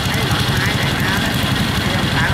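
Diesel engine of farm machinery running steadily at idle, an even low engine noise, as a combine harvester and a tracked carrier stand stuck in deep paddy mud.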